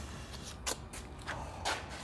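A few soft footsteps and shoe scuffs on a concrete floor, over a low steady hum.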